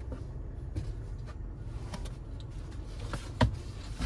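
Scattered light knocks and rustles of someone shifting about and handling things inside a car, the loudest knock about three and a half seconds in, over a low steady rumble.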